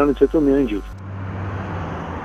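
A man's voice over a telephone line, with a low mains hum under it, cuts off about a second in. Steady outdoor street ambience with distant traffic noise follows.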